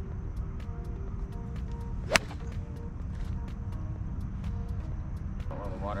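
A single sharp crack of a golf club striking a golf ball about two seconds in, on a full fairway shot.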